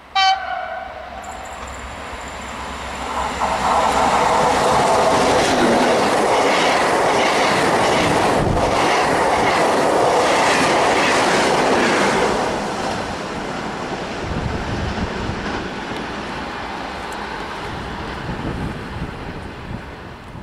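An E.464 electric locomotive gives a short horn blast, then it and its regional coaches pass close by: loud rumbling wheels with a clickety-clack over the rail joints, the noise easing after about twelve seconds as the train draws away.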